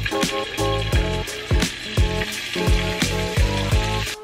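Raw chicken pieces sizzling as they are laid one by one into hot oil in a frying pan. The sizzle fades out right at the end, under background music with a steady beat.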